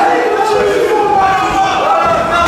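Crowd of spectators at a cage fight shouting and yelling, many raised voices overlapping.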